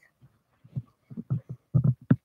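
Irregular low thumps and knocks of a hand handling the phone close to its microphone. They are sparse at first, then come quicker and louder near the end.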